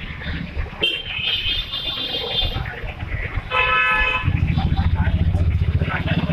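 Street traffic beside a walking crowd with voices. Just past halfway a vehicle horn honks once, briefly. Right after it a nearby truck engine runs with a loud, low, pulsing rumble.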